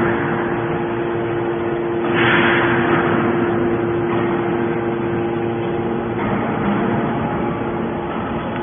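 Hydraulic scrap metal baler running: a steady pump-motor hum, with a loud rushing hiss that rises about two seconds in and fades away over a second or so as the press works.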